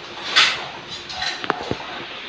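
Cookware being handled at a kitchen gas stove: a short noisy burst, then two sharp clicks about a second and a half in.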